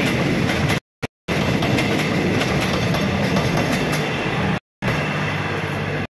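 Passenger train running past close by, a steady rumble and rattle of wheels on rail, broken by two brief gaps of silence about a second in and near the end.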